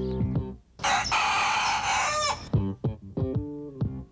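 Background music of plucked, guitar-like notes, cut across about a second in by one loud, harsh bird call lasting about a second and a half that falls in pitch at its end.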